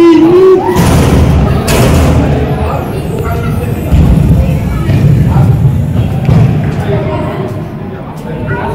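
Bubble-football play in a large echoing hall: a child's high held cry ends just after the start, then two loud thumps from the inflatable bubbles within the first two seconds over a steady low rumble, with scattered voices later.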